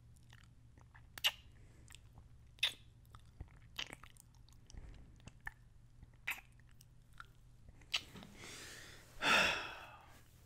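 Close-miked kisses: about five sharp lip smacks a second or two apart, then a loud breath near the end.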